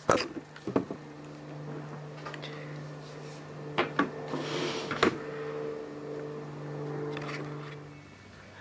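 Nail gun shooting a few nails into a glued mitred hardwood picture-frame corner: short sharp shots spread over several seconds, over a steady low hum.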